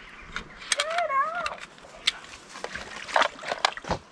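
A young child's short, wavering wordless vocal sound about a second in, with scattered sharp clicks and rustling from a plastic bug container with a mesh lid being handled.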